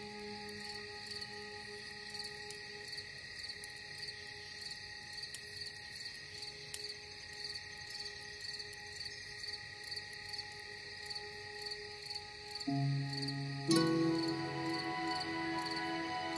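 Ambient background music: long held tones under a high chirping pulse about twice a second. Deeper sustained notes come in near the end.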